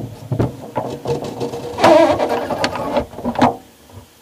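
Car gear shift linkage being worked: metal rods, levers and pivots clicking and clunking as they move, with a louder, longer clunk about two seconds in.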